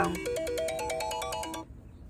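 A short electronic ringtone: quick, evenly pulsed beeping notes climbing in steps, cutting off suddenly about one and a half seconds in.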